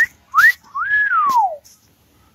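A person whistling in admiration: two short rising whistles, then a longer one that rises, holds and slides down.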